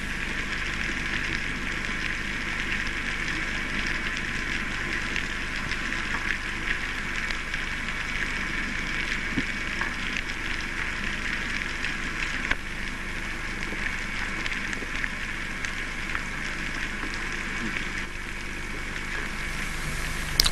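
Underwater ambient noise of the sea heard through a camera housing: a steady hiss with scattered faint clicks, one sharper click about twelve seconds in.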